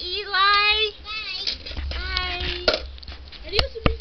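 A young child's high voice making drawn-out, sing-song sounds without clear words, sliding up and down in pitch. A few sharp knocks or clicks come in the second half.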